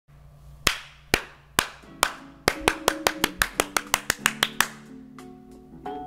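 Hand claps over backing music: a few claps about half a second apart, then a quick run of about six claps a second that stops a little before five seconds in, leaving the music's sustained notes.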